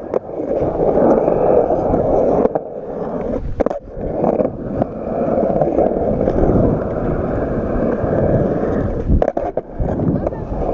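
Skateboard wheels rolling over rough concrete, a continuous loud rumble. It breaks off briefly, with sharp knocks, about four seconds in and again near the end.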